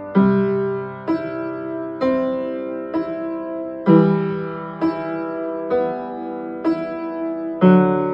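Upright piano playing a repeating chordal accompaniment in G major: a chord struck about once a second and left to ring, with a fuller, deeper chord every fourth beat.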